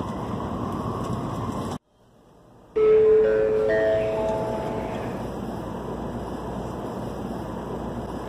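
Steady running noise inside a Shinkansen passenger car cuts out abruptly for about a second. When it returns, a chime of four rising notes rings over it, each note held, and the notes fade over the next few seconds.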